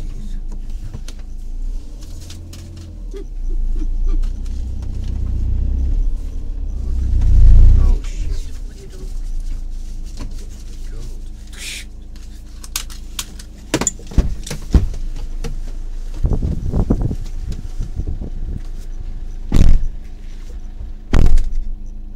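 A stuck motorhome's engine running, with deep rumbling swells from about 2 to 8 seconds in, the loudest near 7 to 8 seconds. Sharp knocks and thumps follow in the second half, the loudest two near the end.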